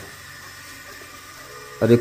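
Faint steady hum and hiss of an electric water-pump motor running in the background while water is pumped up to the tank. A short exclamation is spoken near the end.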